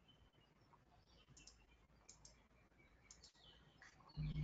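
Near silence: room tone with a few faint, short, high-pitched clicks and chirps scattered through it.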